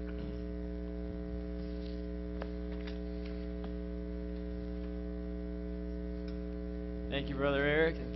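Steady electrical mains hum, a low buzz made of several steady tones, with a few faint clicks. About seven seconds in, a person's voice with a wavering pitch comes in briefly.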